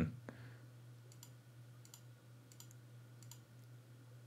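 Faint clicking at a computer: a handful of soft ticks spread through the seconds, one slightly sharper just after the start, over a low steady hum.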